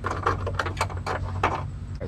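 Quick, irregular clicks, knocks and rattles of plastic and metal as a pickup's old side mirror and its wiring harness are worked out of the door, over a steady low hum.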